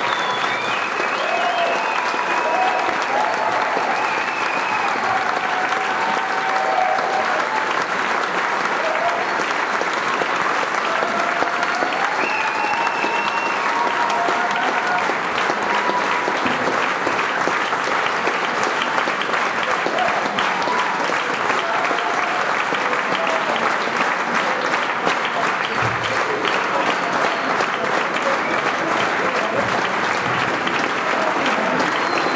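Concert audience applauding and cheering, with shouts and whistles over the clapping in the first half or so.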